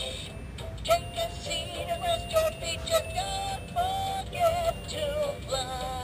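Novelty singing reindeer-on-a-toilet toy singing a song in a high electronic voice through its small built-in speaker.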